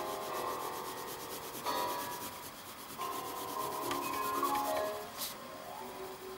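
Pencil graphite scratching on paper in rapid back-and-forth shading strokes, darkening the shadow areas of a drawing. Soft background music notes sound underneath.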